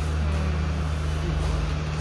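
A steady low hum over an even background noise, with no change through the two seconds.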